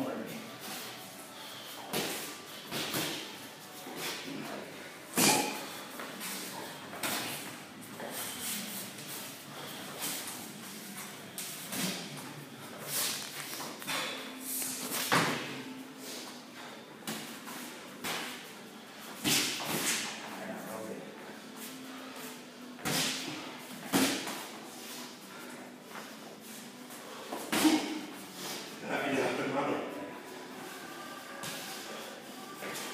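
Boxing-gloved punches and kicks landing during light sparring: irregular sharp thuds and slaps, one every second or two.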